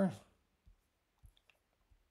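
A few faint computer mouse clicks, short and irregularly spaced, in an otherwise quiet room.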